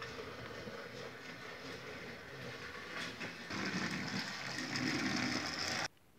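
Battery-powered Trackmaster Thomas toy engine running along plastic track: a faint, steady whirr and rattle of its small motor and gears, getting louder about halfway through, then cut off just before the end.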